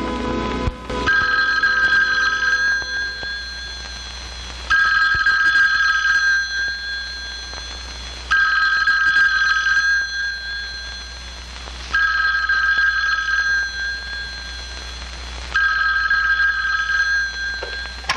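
A push-button desk telephone ringing five times, a ring about every three and a half seconds, each ring lasting about two seconds.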